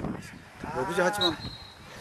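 A voice giving one drawn-out call near the middle, its pitch rising and then falling.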